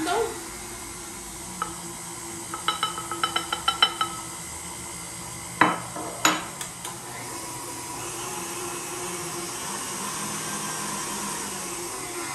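Tilt-head stand mixer running at low speed with a steady hum while flour is added to its stainless bowl. About two seconds in there is a quick run of light metallic taps that ring, then two sharp knocks near the middle.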